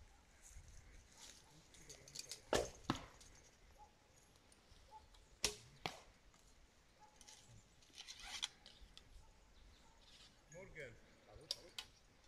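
Traditional bows being shot at a target: sharp snaps of bowstring release and arrow strikes, a close pair about two and a half seconds in and a single loud crack about five and a half seconds in, with lighter clicks later on.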